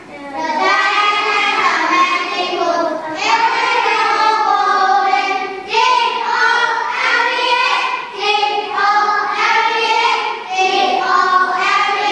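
Children singing a nursery rhyme in phrases of two to three seconds, with short breaks between the lines.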